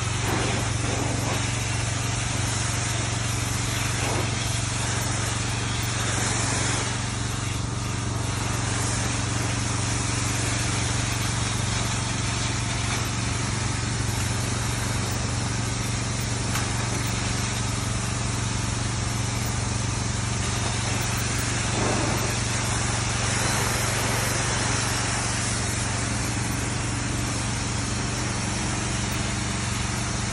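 Pressure washer running steadily: a constant motor drone under the hiss of the water jet spraying onto a concrete floor.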